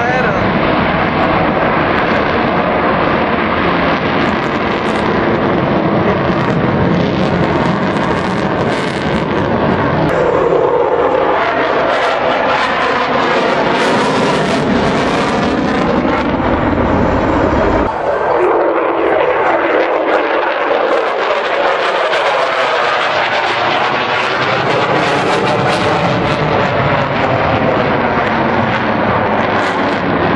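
Loud jet noise from an F-16 fighter flying an aerobatic display, rising and falling in a sweeping whoosh as the jet turns and changes distance. The deep rumble cuts out abruptly about two-thirds of the way through, leaving a thinner, higher roar.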